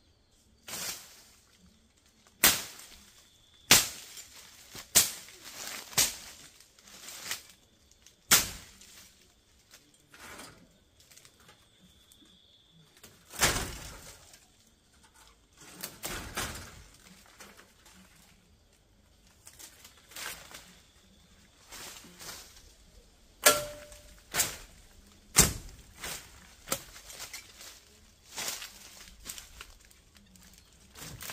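Machete chopping through weeds and bush, a sharp stroke every second or so at an uneven pace, some strokes much louder than others.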